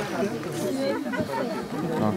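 Several people talking at once, their voices overlapping in a babble without clear words.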